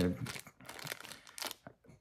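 Clear plastic zip bag crinkling in the hand, a run of short, irregular crackles.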